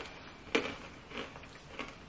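Crunchy roasted broad beans being chewed: a few short, sharp crunches about half a second apart, the first the loudest.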